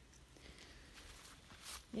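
Faint rustling and handling noise over a quiet outdoor background, with a few soft, brief crisp sounds near the end.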